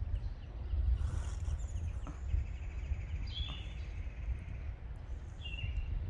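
Low rumble of wind on the microphone, with faint high bird calls over it: a few short chirps and a long thin whistle lasting a few seconds.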